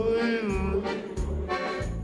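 A man singing a carnival song with a band: a sung line, then a long held note with vibrato, over a steady bass beat.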